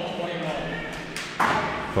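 Ice hockey play in an arena: a sharp knock of stick on puck about a second and a half in, followed by a short scraping hiss of skates on the ice, over faint voices.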